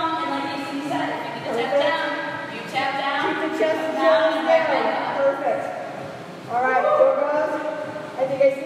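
A person's voice in several phrases, with a short lull about six seconds in.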